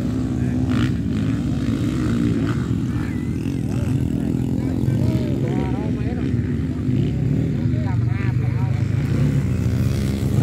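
Dirt bike engine running steadily close by, its pitch hardly changing, with voices faintly in the background.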